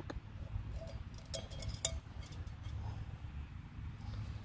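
A few light metallic clinks, two sharper ones about a second and a half in, half a second apart, as a metal cup hanging from a Figure 9 cord tensioner is handled, over a low steady background rumble.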